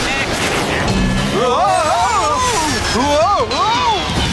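Cartoon soundtrack: a rocket-thruster whoosh in the first second and a half, then a character's voice calling out in long swooping, wordless exclamations over background music.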